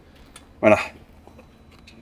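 A man says a single word, "voilà", a little over half a second in; otherwise only faint background noise.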